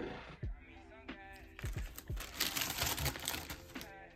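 Tissue paper crinkling and rustling as a sneaker box is opened and the wrapping is pulled back, starting about a second and a half in. Background music with a beat plays underneath.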